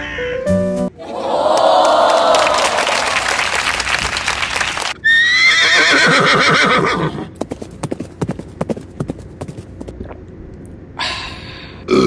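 Horse sound effect: a loud, shaky whinny with falling pitch, followed by a run of clip-clopping hoofbeats. A short bit of music plays at the very start.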